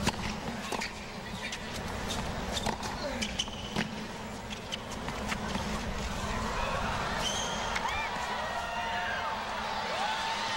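Tennis rally on a hard court: a serve, then a series of sharp ball strikes and bounces off rackets and court. Under them runs the low murmur of a stadium crowd with a few scattered calls.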